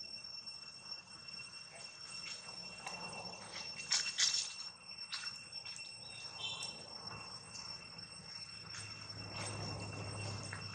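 Steady insect drone made of two high, unchanging tones. A brief, louder crackle cuts across it about four seconds in.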